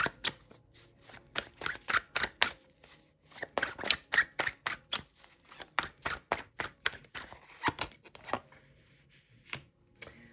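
A deck of tarot cards being shuffled by hand, the cards clicking and slapping together about four times a second, with a short pause near the end.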